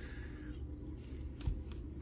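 Quiet handling of Panini Prizm trading cards by gloved hands: faint slides and clicks as cards are moved from one hand to the other, with one soft low thump about one and a half seconds in.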